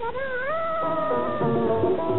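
A female singer holds one long note that swoops up and then slowly sinks, over the film song's orchestral accompaniment. A rhythmic backing comes in under the held note.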